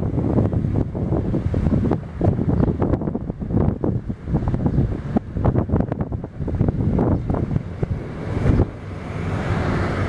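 Wind buffeting a handheld camera's microphone: a rough, gusting rumble that keeps rising and falling in loudness.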